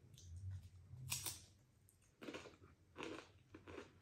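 Faint crunching of a wavy Pringles crisp being chewed with the mouth closed. One crunch comes about a second in, then several more about every half second.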